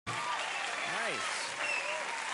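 Studio audience applauding, with a voice rising and falling briefly about a second in.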